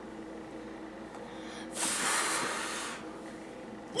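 A child blowing out two birthday candles: one long puff of breath, strong at first and trailing off, a little under two seconds in.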